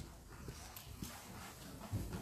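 Faint room noise with a few soft clicks and knocks; the loudest is a low thump near the end.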